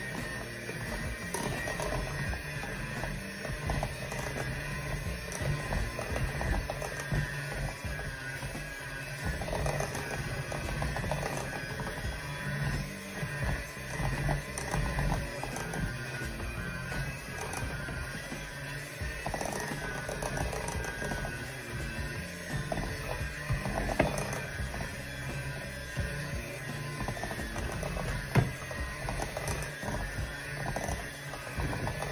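Electric hand mixer running steadily, its beaters working eggs into peanut butter cookie dough in a glass bowl, with music in the background and a few clicks.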